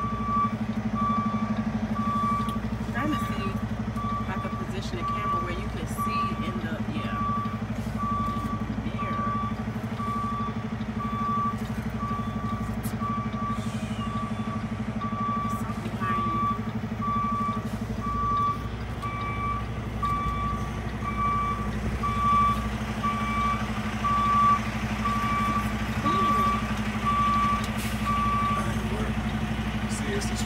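A tractor-trailer's back-up alarm beeping steadily, about once a second, while the truck reverses, over the steady hum of the diesel engine; the beeping stops near the end.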